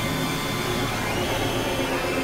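Dense experimental electronic music made of several tracks layered at once, forming a steady wash of noise with faint held high tones; one high tone steps down in pitch about a second in.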